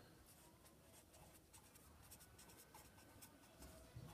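Faint scratching of a felt-tip pen on paper as a word is written by hand, a quick run of short strokes.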